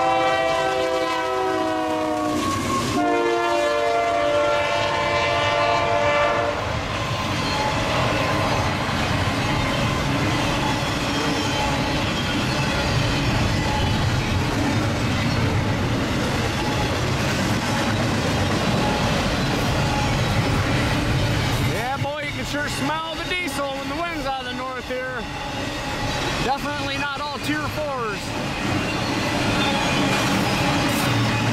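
Union Pacific freight locomotive's multi-chime horn sounding two long blasts, the second ending about six seconds in. Then comes the steady rumble and rolling clatter of a long double-stack container train passing close by.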